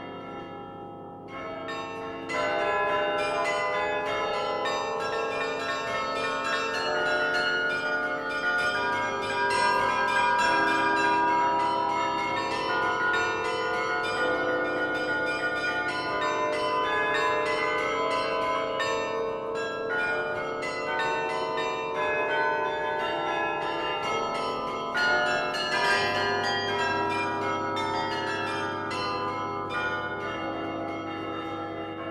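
Restored Hemony carillon played by hand from its baton keyboard: many bronze bells struck in quick succession, their notes overlapping and ringing on. After a short lull near the start, the playing picks up again about two seconds in.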